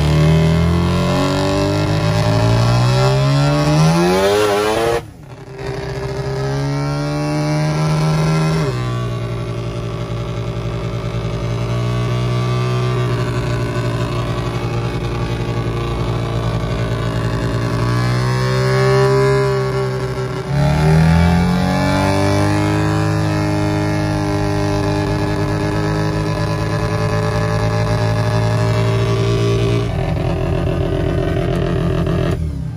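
Old van's engine running under load on the road, its pitch climbing over the first few seconds and then holding steady. It cuts out briefly about five seconds in, and near twenty seconds the pitch sags and then climbs again. The van's transmission is slipping.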